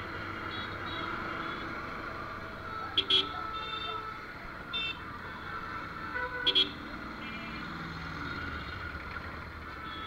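Vehicle horn beeping in short double blasts, twice about three and a half seconds apart, with a fainter beep between, over the steady running of a motorcycle engine and busy street traffic.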